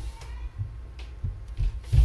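Low handling rumble with several soft knocks and a louder thump near the end, from hands and pens bumping against the drawing table.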